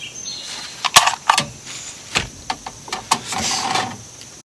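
A string of sharp clicks and knocks from handling a rifle and gear on a shooting bench, the loudest about a second in, then several lighter ones.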